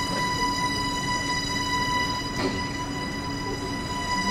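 A steady held tone with a ladder of overtones over a constant rumbling noise, with one faint click about two and a half seconds in.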